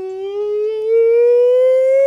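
A single voice holding one long sung note that rises slowly and steadily in pitch.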